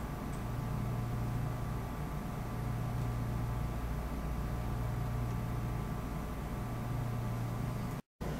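Steady low background hum with an even hiss over it, and no distinct events.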